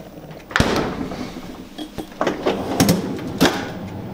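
Refrigerator door and freezer drawer being handled: a sudden clunk about half a second in as the door is pulled open, then a few sharp knocks and rattles as the bottom freezer drawer slides out.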